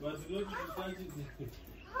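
Chicken screaming in alarm as it is chased, a run of short pitched distress calls.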